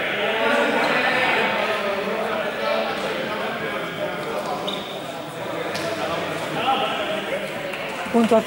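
Many young people talking at once in a large, echoing sports hall, with a few sharp knocks of a ball or feet on the floor.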